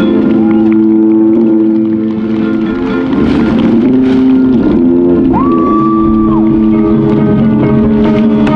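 High school marching band playing: winds hold sustained chords over the front ensemble. Just past the middle a single high note swoops up, holds for about a second and glides back down.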